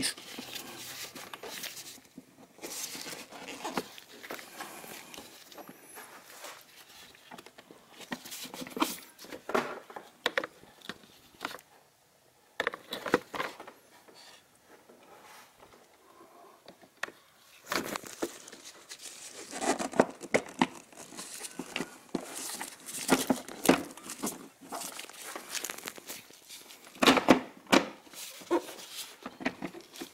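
Irregular light clicks, scrapes and crinkling from a plastic air filter cover being fitted and aligned onto its airbox base by gloved hands, busiest in the last third.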